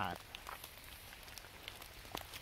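Light rain pattering on wet leaf litter: scattered small drop ticks over a faint, even hiss.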